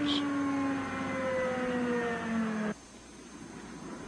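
Machinery of the Lance loader transporter whining steadily, its pitch sliding slowly down as it winds down, then cutting off suddenly about two-thirds of the way in.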